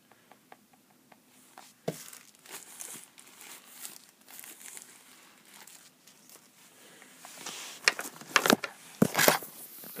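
Plastic wrapping crinkling and rustling as a tablet is pulled out of it, starting with a few light clicks and growing louder in sharp crackles near the end.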